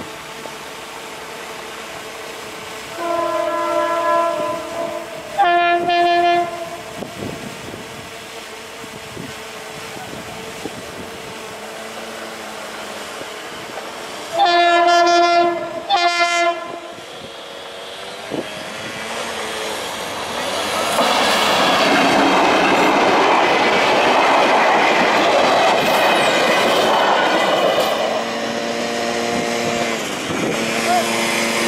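Diesel passenger train horns sounding two blasts a few seconds in and two more about halfway through, each a chord of steady tones. This is followed by a train passing close with a loud rumble and wheel clatter for about eight seconds, and a steadier droning tone near the end.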